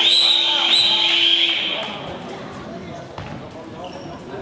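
A sports-hall buzzer tone, held steady and cutting off about a second and a half in, with a run of short squeaks over it; after it, the echoing noise of play on a hardwood court.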